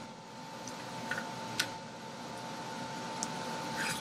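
Plastic cap of a Schneider Viz ballpoint stick pen snapped on and off close to the microphone: a few faint, short clicks, the clearest about a second and a half in.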